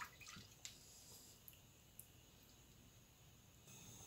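Near silence, apart from a few faint watery ticks in the first second from a wooden spoon stirring whole wheat and chana dal in a pot of salted water.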